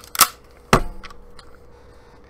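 Two sharp metallic clacks about half a second apart, the second with a brief ring: the action of an old Remington 12-gauge pump-action shotgun being worked.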